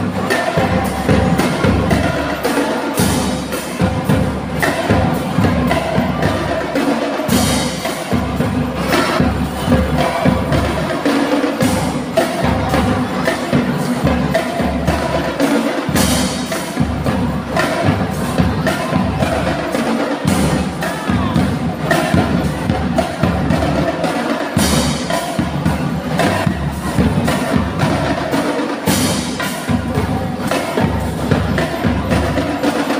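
Marching band playing: snare and bass drums beat a steady march rhythm under a pitched melodic line.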